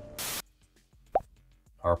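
Orchestral film music fades and is cut off by a short burst of static. About a second later comes a single sharp pop with a quick pitch glide, and a man's voice begins near the end.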